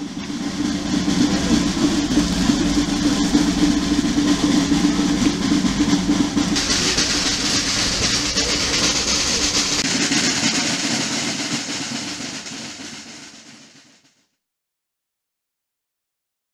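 Snare drums played in a continuous roll, a dense rattling that grows brighter about six seconds in, then fades away and stops about fourteen seconds in.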